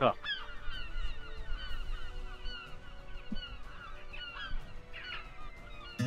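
A flock of birds calling: many short, overlapping chirping calls that carry on steadily.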